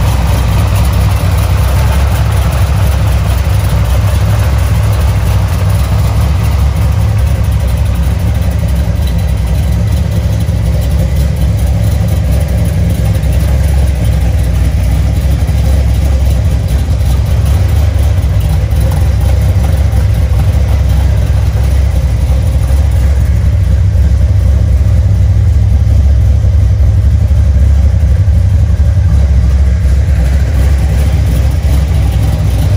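Supercharged Chevrolet V8 with a polished roots-type blower and twin carburettors, in a 1976 Corvette, idling steadily.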